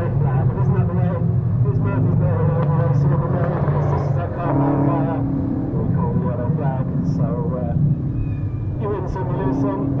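American cup stock car engines running as the cars lap a short oval, a steady low engine note, with indistinct voices talking over it.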